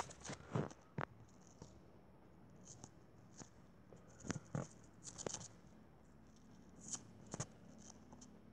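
Faint, scattered small clicks and rustles of handling close to the microphone, in loose clusters a few seconds apart.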